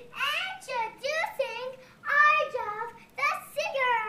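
A young child's high-pitched voice in a run of short, wordless sung phrases that glide up and down in pitch, ending with a long falling glide.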